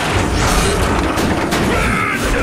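Cartoon action sound effects: a boom and several crashing impacts as metal robots fight, over background music.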